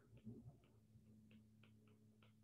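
Near silence with a scatter of faint, short ticks: a stylus tapping on a tablet's glass screen while writing.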